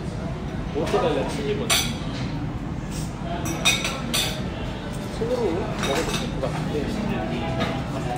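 Metal knives and forks clinking and scraping against ceramic plates as food is cut, with several sharp clinks spread through.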